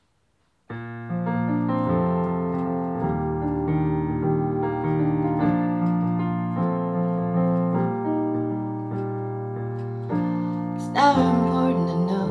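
Keyboard playing a slow piano-style song intro: held chords over sustained bass notes, starting abruptly just under a second in and changing about once a second. Near the end a woman's voice begins singing over it.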